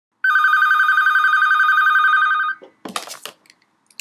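A telephone ringing with a fast warbling trill for about two seconds, then a short clatter as the handset is picked up.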